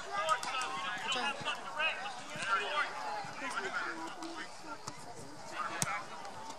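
Indistinct talking of several sideline spectators overlapping, with no clear words. A single sharp knock sounds near the end.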